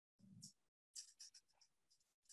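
Near silence on a video-call line, gated to nothing at times, with a few faint brief noises about half a second and a second in.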